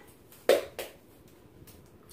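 Two short, sharp taps about a third of a second apart, the first much louder.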